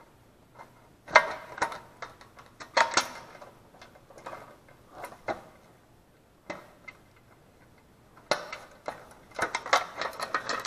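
Hands fitting the oil fill tube and its bolt onto a Honda GXV160 engine: scattered light clicks and taps of parts, with several close together near the end.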